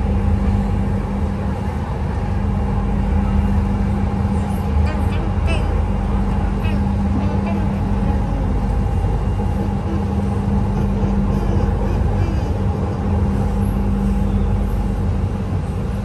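Interior running noise of an electric LRT train in motion on its elevated track: a steady low rumble with a constant hum, heard inside the carriage.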